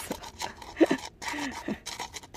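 A woman's short, breathy laughs, with light clicks from hands working potting soil and a plant in a plastic tub.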